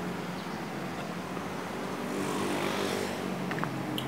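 City street traffic with a motorcycle engine passing close by, its hum growing louder in the middle and easing off near the end.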